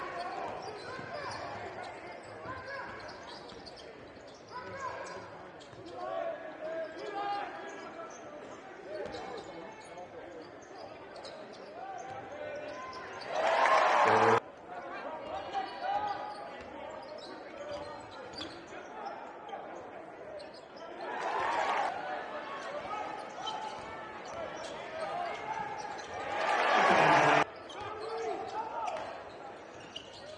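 Basketball game sound in an arena: a ball being dribbled on the hardwood court with voices around it. The crowd noise swells loudly three times, about 13 seconds in, about 21 seconds in and near the end, and the first and last swells cut off abruptly.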